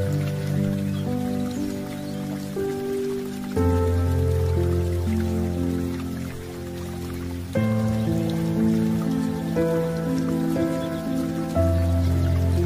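Calm new-age background music of long sustained chords, changing about every four seconds, with a soft rain-like patter beneath.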